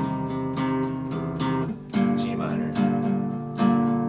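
Acoustic guitar picked with a plectrum, a chord struck in quick repeated strokes about three times a second; the chord is a G minor. About two seconds in, the notes change to a different chord shape, which is picked the same way.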